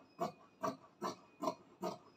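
Fabric scissors snipping through crepe fabric in a steady run of short cuts, about two to three a second.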